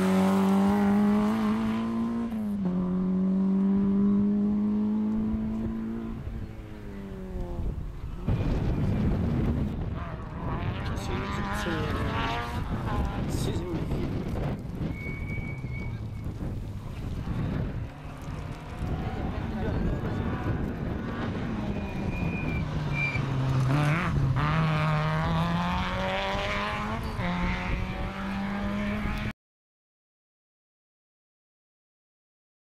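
Rally car engine pulling hard through the gears: the note climbs, drops once at an upshift about two seconds in, climbs again and fades. Spectators' voices follow. Near the end another rally car's engine note falls as it slows, then climbs again as it accelerates away. The sound stops abruptly just before the end.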